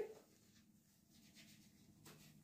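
Near silence: faint scratchy rubbing as a gloved hand works hair dye through wet hair.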